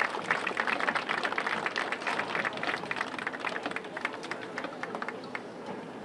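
Audience applauding, the clapping gradually thinning and fading away.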